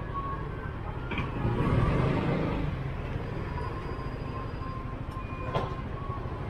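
Motorbike engines running at low speed in a queue, with a louder swell of engine noise about two seconds in and a sharp click near the end.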